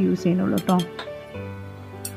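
A woman's voice for about the first second, with a few quick clinks around the same time, then soft background music of steady held notes.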